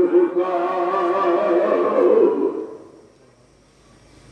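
A man's voice chanting one long, drawn-out melodic note with a slight waver, in the sung style of a waz preacher. It fades out about three seconds in, and little is heard after it.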